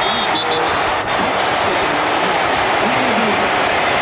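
A stadium crowd cheering after a touchdown, heard through a TV broadcast, steady and loud, with faint voices mixed in.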